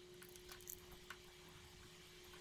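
Near silence: a few faint ticks from a screwdriver backing out the small Phillips screw on an angle grinder's guard lock, over a faint steady hum.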